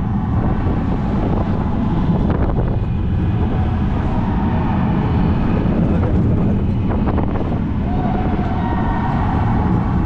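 Roller coaster car running along its steel track, a steady loud rumble of the wheels with wind buffeting the rider's microphone, heard from the seat of the spinning car.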